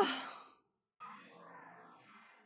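The tail of a person's sigh, fading out within the first half second. A faint sound that rises and then falls in pitch follows about a second in.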